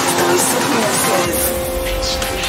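Electronic dance music at a mix transition: a busy passage of sliding, voice-like and engine-like synth sounds, with a deep bass and a steady held tone coming in just over a second in.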